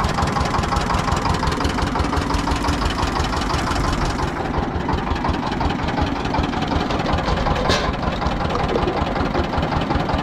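Small engine on a sugarcane juice cart running steadily, driving the crusher's rollers as juice is pressed out.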